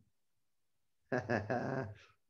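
About a second of silence, then a man laughing, low-pitched and drawn out.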